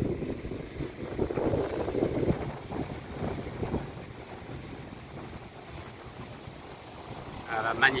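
Ocean surf breaking on a sandy beach, mixed with wind buffeting the phone's microphone. It gusts louder in the first few seconds, then settles to a steadier, lower wash.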